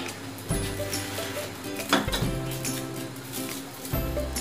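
Background music, with two light knocks against a metal cooking pot as a foil-wrapped roll is lowered into hot water.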